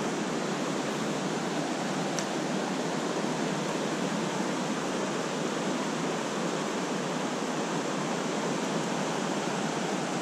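Shallow trout stream running over a rippled riffle: a steady, even rush of moving water.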